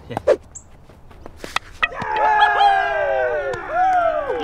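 Cricket fielders shouting together in celebration of a wicket. Their long, drawn-out cry of several men's voices starts about halfway in and falls in pitch. Just before it come a couple of sharp knocks, as the ball hits the stumps.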